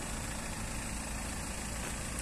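BMW 320d's 2.0-litre four-cylinder turbodiesel idling steadily, with the bonnet open.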